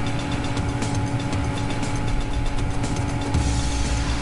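Steady background hum and hiss, with a few constant droning tones and no distinct events.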